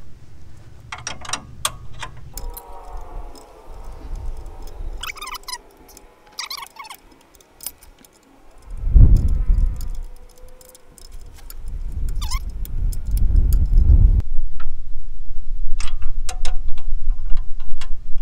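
Metal hand tools and brake fittings clinking and jangling in scattered sharp clicks as a brake hose fitting is worked loose. Heavy rubbing rumbles from cloth brushing the microphone come about halfway through and again in the last few seconds.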